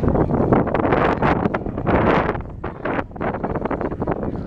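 Wind buffeting the microphone of a camera on a moving bicycle, in loud, irregular gusts.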